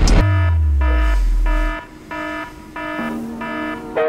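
An alarm clock beeping at about two beeps a second, going off to wake a sleeper. In the first second and a half a loud low tone slides down under it.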